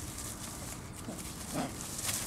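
Shiba Inu puppies playing tug-of-war with a cloth, one giving a short low growl about one and a half seconds in, amid scuffling.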